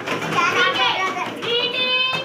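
Young children's voices, several talking and calling out at once, with one voice holding a steady pitch near the end.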